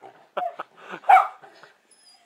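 A schnauzer barking excitedly at a bird through a window: two barks, the second one louder.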